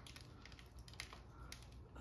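Faint, scattered small clicks and crackles of moss being picked away from a moss pole by hand, one a little sharper about a second in.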